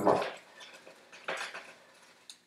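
A brief light tap about one and a half seconds in, as folded paper is tapped against the rim of a small vial to shake powder into it.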